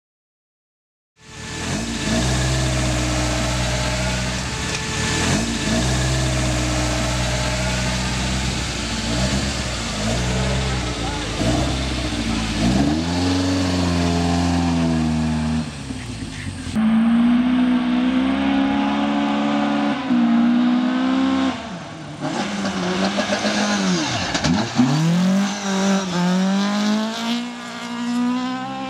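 Rally-prepared 1980 Toyota Celica RA40's engine revving hard, its pitch repeatedly climbing and dropping with throttle and gear changes. It starts about a second in.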